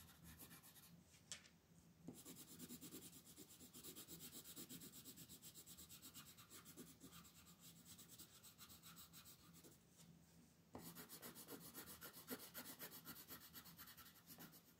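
Faint, rapid back-and-forth scratching of a red Faber-Castell coloured pencil shading on paper, with short pauses about a second in and near ten seconds in.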